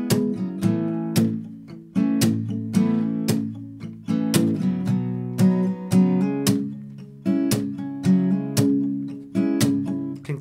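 Acoustic guitar with a capo, strummed in a steady groove through a chord progression, with hammer-ons added on beat one as embellishment. The chords change every couple of seconds.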